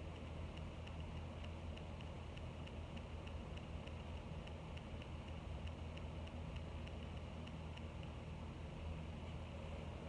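An electric fan running: a steady low hum with a fast, even ticking, about four ticks a second.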